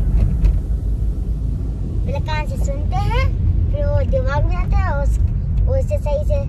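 Steady low road and engine rumble inside a moving car's cabin. About two seconds in, a high-pitched voice with gliding pitch joins it for a few seconds, and comes back near the end.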